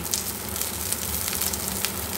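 Cauliflower florets frying in hot oil in a kadai: a steady sizzle with scattered small pops.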